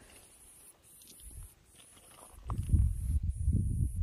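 Wind buffeting the microphone outdoors: a low, gusting rumble that comes in about two and a half seconds in after a nearly quiet stretch.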